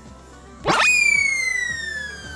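Cartoon-style 'boing' sound effect: a quick sweep up in pitch about two-thirds of a second in, then a loud ringing tone that slides slowly downward, over background music.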